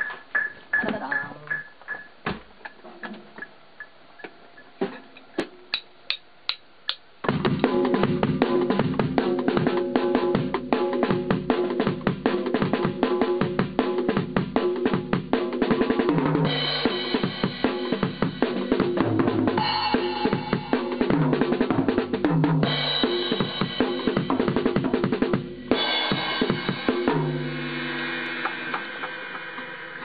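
A studio click track ticking about twice a second, then about seven seconds in a drum kit starts playing a beat with kick, snare and cymbals, joined by other pitched instruments.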